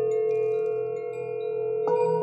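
Tibetan singing bowls ringing in long, steady overlapping tones over a low pulsing keyboard drone, with faint high pings. Near the end a bowl is struck with a wooden mallet, adding a fresh ringing tone.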